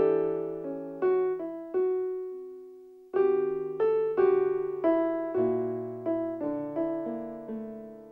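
Piano-sounding keyboard playing a slow waltz, single notes and chords, each struck and left to ring. A note fades out about two seconds in before a denser run of notes, and a last chord dies away near the end.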